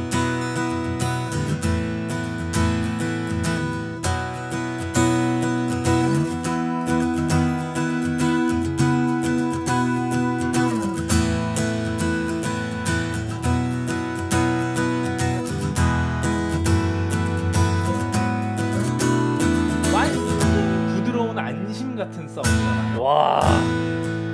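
Breedlove King Koa acoustic guitar, close-miked with a condenser microphone, strummed in a steady rhythm of full chords that change every second or two.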